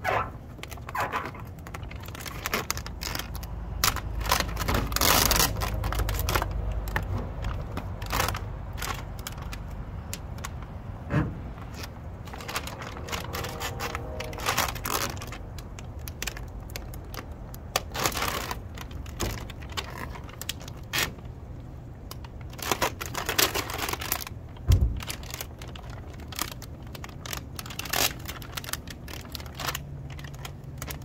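Thin plastic transfer sheet of a vinyl decal crinkling and rustling as hands rub it down and peel it back off a van's painted side. The crackles and rustles come at an irregular pace, with a few longer rustles.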